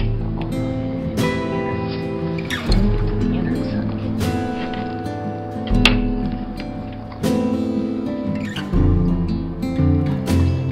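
Background music: an acoustic guitar strumming chords, with a new strum about every one and a half seconds.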